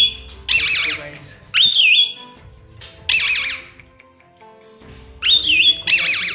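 Pet parakeet calling excitedly: a whistled note followed by a harsh screech, three times over, a sign the bird is happy.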